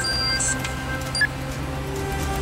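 Background music of a TV drama score: held, sustained notes with a few short high accents, one louder accent just past the middle.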